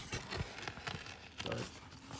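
Handling noise from a backpack: fabric rustling with a scatter of small irregular knocks and clicks as the phone is moved around inside the bag and pulled back out.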